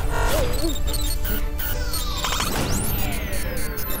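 Cartoon background music with magic sound effects: a sharp crash at the start, then a shimmering whoosh that sweeps up high in pitch and back down in the second half, as the magic takes effect.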